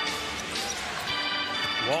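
A basketball dribbled on a hardwood court, with arena crowd noise and a held note of arena music sounding twice.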